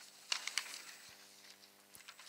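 Sheets of paper being handled and turned close to a desk microphone: a few short crisp rustles about half a second in.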